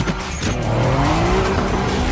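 Race car engines revving hard, the pitch climbing from about half a second in, with tire squeal underneath.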